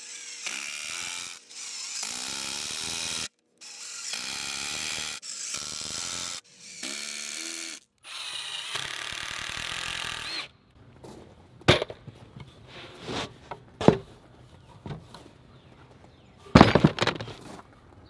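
Cordless Milwaukee M18 Fuel driver driving 2½-inch exterior deck screws into the wooden legs and 2x8 seat boards, in about six bursts of a second or two each with short breaks between. A few sharp knocks follow, then a brief louder knock near the end.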